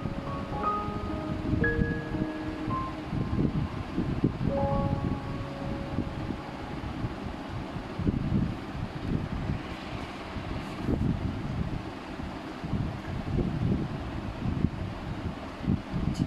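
Light background music of short, separate melodic notes, fading out after about five seconds, over a low, uneven rumble that carries on to the end.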